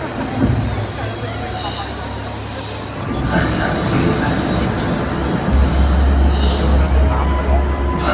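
Dark, sustained synthesizer chords over a stadium PA opening the song, with a deep bass drone that swells in strongly about two-thirds of the way through. Crowd chatter sits underneath.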